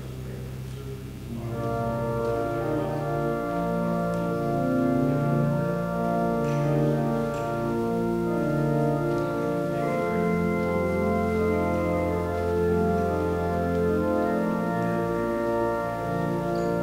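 Organ playing slow, sustained chords. The fuller chords come in about a second and a half in, and a low held bass note sounds under them for a few seconds in the middle.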